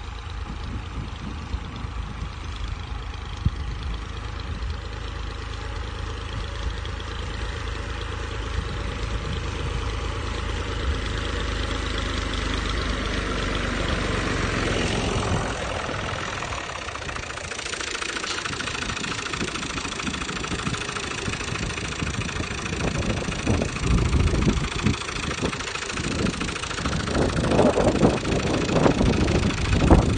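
Farm tractor's diesel engine running steadily while pulling a plough through dry soil, slowly growing louder. About halfway through the sound changes to a rougher, uneven engine noise with louder bursts near the end.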